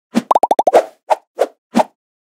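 Sound-effect pops of an animated title intro: a quick run of about seven short, pitched pops, then three single pops about a third of a second apart.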